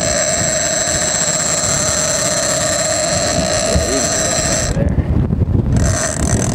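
Big-game reel's drag screaming as a bluefin tuna pulls line off against heavy drag: one steady high whine that cuts off abruptly near the end.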